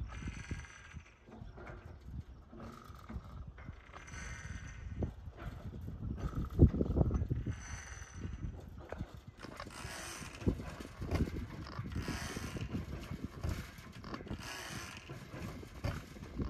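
Old Aermotor water-pumping windmill working in the wind: its gearing and pump rod squeak and clank in a slow cycle, about once every two seconds, as the rod strokes the pump. Wind rumbles on the microphone underneath.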